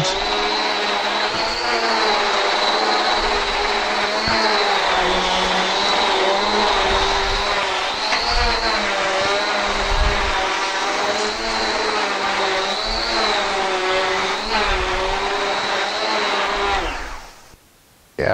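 Central vacuum running with its electric beater-bar power head pushed back and forth over a mat, switched on from the newly replaced handle switch: a steady rushing whine whose pitch wavers a little with each stroke. The vacuum is working again and picking up stones and debris. It shuts off near the end.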